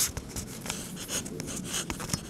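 Handling noise from a tablet being moved and gripped: irregular rubbing and scraping with scattered clicks.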